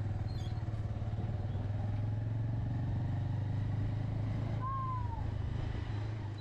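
Motorcycle engine running at a steady cruise, a low even hum heard from the rider's position. A brief falling whistle-like tone sounds about five seconds in.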